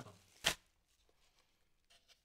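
One brief handling noise about half a second in as the plastic solar LED lamp is turned over in the hands, then near silence.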